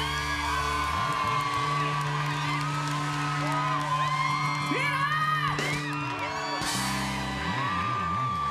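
Live rock band holding out the closing chords of a song, with drums and cymbals, while the audience whoops and cheers over it.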